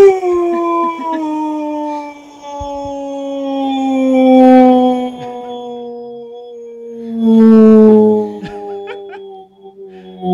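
A person holding one long, slowly falling sung "Doooom", a mock-ominous howl, swelling louder twice and dipping briefly near the end.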